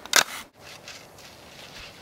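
A couple of short, sharp crunching clicks at the start, then the sound drops out for an instant and a faint, steady outdoor hiss follows.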